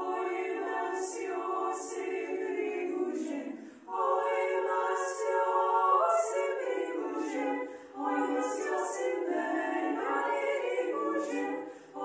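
A small group of women's voices singing a Lithuanian folk song a cappella, in phrases about four seconds long with short breaks between them.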